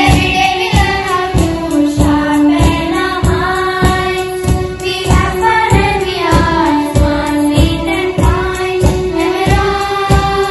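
A children's choir singing a school anthem over instrumental accompaniment, with a held low note and a steady beat of about three strokes every two seconds.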